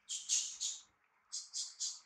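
Baby macaque giving short high-pitched squeaks in quick runs of three, one run at the start and another just past the middle.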